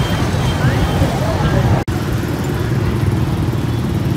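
Street traffic noise: a steady low rumble of motorbike engines with background chatter from a crowd. The sound cuts out for an instant about two seconds in.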